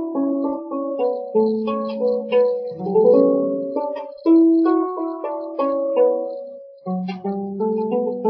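Wooden lyre, a replica of the ancient Hebrew kinnor, plucked by hand in an improvised melody of single notes that ring on and overlap as they fade, in the ancient Greek Hypolydian mode. The playing pauses briefly about seven seconds in, then picks up again.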